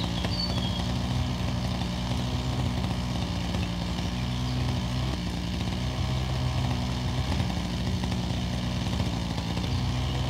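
An engine idling steadily, its pitch wavering slightly about halfway through.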